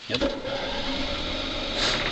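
Onan RV generator being cranked from its remote start switch: the starter turns the engine over steadily and it has not yet caught.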